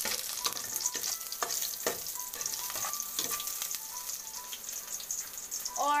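Chopped garlic and onion sizzling in hot oil in an aluminium pot, with the irregular scrape and click of a spoon stirring them against the pot.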